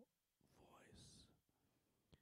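Near silence with one faint whispered word from a man, ending in a soft hiss.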